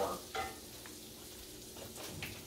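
Browned crumbled sausage sizzling gently in a skillet on low heat, with a brief scrape of a wooden spoon stirring it shortly after the start, then a faint steady sizzle.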